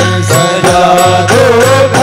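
Live devotional bhajan music: harmonium and electronic keyboard playing a wavering melody.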